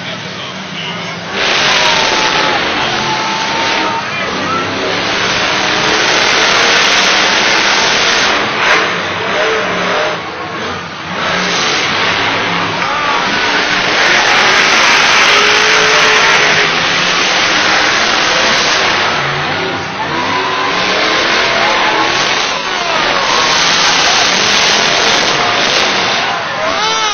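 Monster truck engines, supercharged big-block V8s, revving hard during a race. The loud, dense engine noise starts about a second in, and the pitch repeatedly rises and falls as the throttle is worked.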